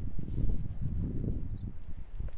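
Footsteps tramping through deep fresh snow: a quick, irregular run of soft, low thuds.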